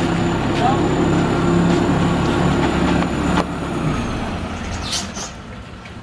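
Large engine idling steadily, then shutting off abruptly about three and a half seconds in; a short hiss follows near the end.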